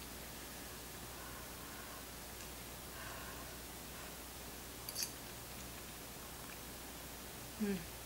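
Quiet room with a low steady hum while a person takes a forkful of pasta and chews quietly. One small sharp click about five seconds in, and a closed-mouth "mmm" near the end.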